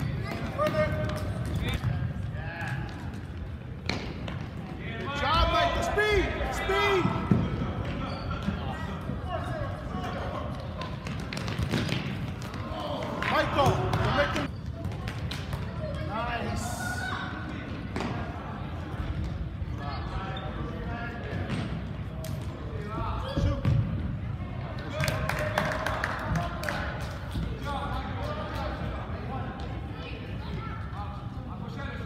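Futsal ball being kicked and bouncing on a hard gym floor, in scattered thuds, under bouts of calling and shouting voices that carry through the gym.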